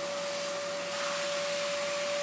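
Steady machine noise: an even hiss with one constant humming tone, unchanging throughout.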